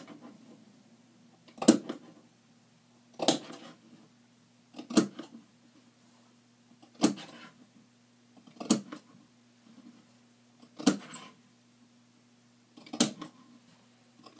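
Fabric scissors snipping notches into the edge of a lined jabot to mark the pleats: seven short, sharp snips, one about every two seconds. A faint steady low hum runs underneath.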